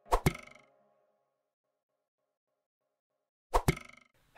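A pair of quick percussive pops with a short ringing tail, then near silence, then the same pair of pops again about three and a half seconds in: an edited-in sound effect marking each logo transition of the video intro.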